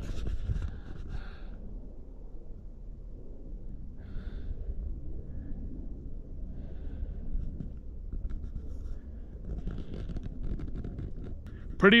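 Low, uneven rumble on a handheld camera's microphone, with a man breathing.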